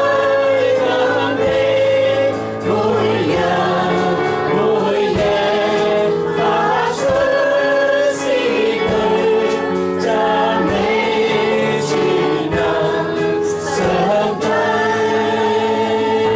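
A worship song: a man singing long, held notes over sustained electronic keyboard accompaniment.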